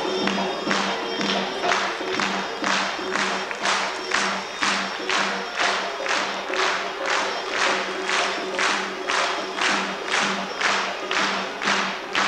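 Traditional Armenian folk dance music, driven by percussion beating an even rhythm of about two strikes a second over a steady low tone.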